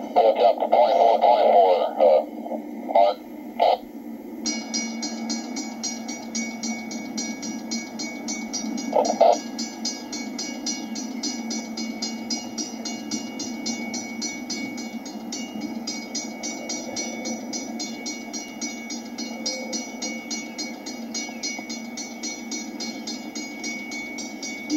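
A railroad two-way radio voice comes through briefly at the start, then a locomotive bell rings steadily: a rapid, even ticking over a sustained ringing tone as the welded-rail train shoves slowly.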